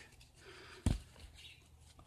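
A single sharp click a little under a second in, from a plastic 3D pen being handled close to the microphone, over faint handling noise.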